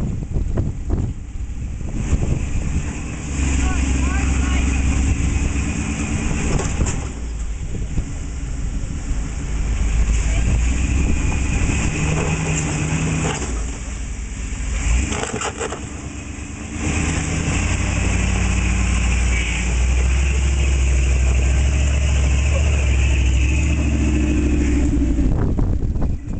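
Engine of a built Jeep rock crawler running under load as it crawls over boulders, revving up and down, with a brief easing off about fifteen seconds in.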